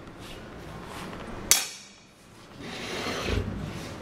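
Handling noise: a single sharp knock about one and a half seconds in, then a stretch of rubbing and shuffling.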